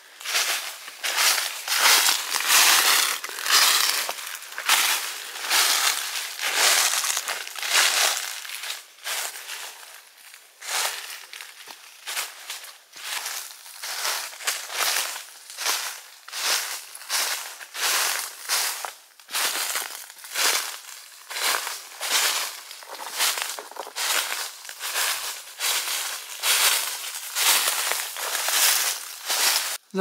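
Footsteps crunching through dry fallen leaves on a forest floor, at a steady walking pace of a little under two steps a second.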